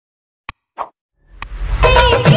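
Mouse-click sound effects from a like-and-subscribe button animation: a click, a short pop, and a second click, set against silence. Near the end, music swells back in.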